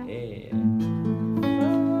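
Classical nylon-string guitar played fingerstyle: a melody over held bass notes, with new notes plucked about half a second in and again about a second and a half in.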